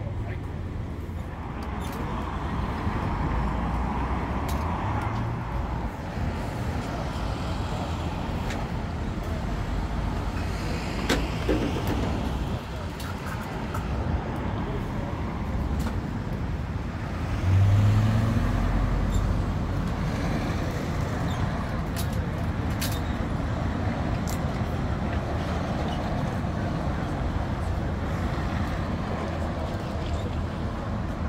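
Steady road traffic on a busy city boulevard, with a heavy truck engine running close by. About seventeen seconds in, a louder low engine surge stands out over the traffic, and a few sharp knocks are scattered through.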